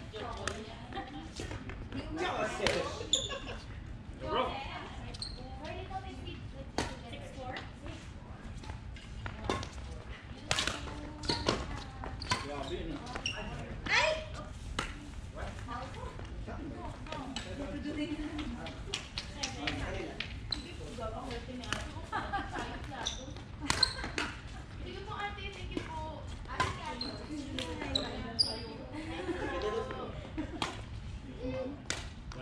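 Badminton rackets striking a shuttlecock, sharp cracks at irregular intervals throughout, with footfalls on the wooden court, echoing in a large sports hall. Voices talk in the background.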